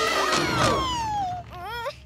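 Several young cartoon voices screaming together as they are flung through the air, with one long falling cry that fades about a second and a half in. Short vocal gasps follow near the end.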